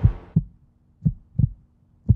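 Heartbeat sound effect: low double thumps in a lub-dub rhythm, about one beat a second, with a faint steady hum underneath.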